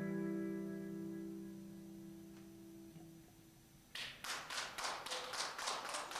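A guitar's last chord rings out and fades away over about three seconds. After a brief hush, scattered clapping from a small audience starts about four seconds in.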